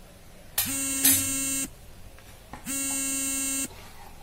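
An electronic buzzer sounding twice: each buzz is steady and lasts about a second, with about a second of gap between, as part of a pattern that keeps repeating.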